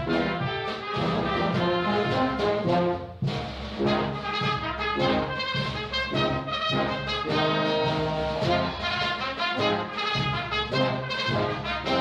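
A wind band (banda de música) playing a dobrado, the Brazilian street march, with brass carrying the melody over a steady march pulse; the music drops back briefly about three seconds in, then carries on at full strength.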